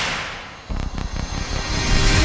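Edited intro sound effects: a sharp impact hit that fades over about half a second, then a deep rumble with a few quick glitch clicks, swelling into the start of the intro music.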